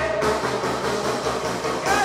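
Tierra Caliente dance music from a band, playing between sung lines. The singing comes back in near the end.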